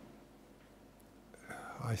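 Near-silent room tone through a pause in a man's speech, then a breath drawn in and his voice starting again near the end.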